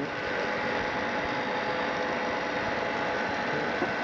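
Steady background noise, an even hiss with a few faint humming tones, holding level without change.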